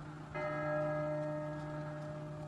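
A single church bell stroke about a third of a second in, ringing on with several steady overtones and slowly fading over a low steady hum.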